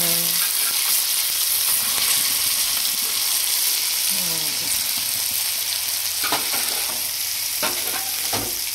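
Whole masala-coated fish sizzling steadily in oil on a flat dosa griddle, with a metal spatula pressing on it. A couple of sharp knocks sound near the end.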